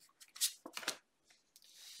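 A tarot card being handled and laid down on a wooden desk: a few short rustling, sliding strokes about half a second and just under a second in.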